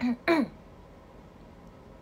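A woman clears her throat: two short voiced sounds in the first half second, the second louder and falling in pitch.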